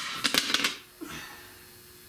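Metal hand tools clinking against each other or the concrete floor: one sharp click, then a quick rattle of several clinks within the first second.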